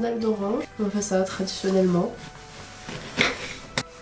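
A woman speaking for about the first two seconds, then quieter knife-and-board sounds as an orange is sliced, with a sharp click near the end.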